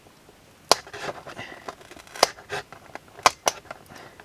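Utility knife blade scraping and prying the glued paper cone of a 10-inch woofer away from its voice coil former, with scattered sharp clicks and crackles as the stiff paper and glue give way. The loudest clicks come about three-quarters of a second in, just past two seconds, and twice past three seconds.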